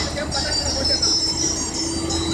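Combine harvester running: a steady low engine drone with a constant hum and high-pitched whining from its machinery.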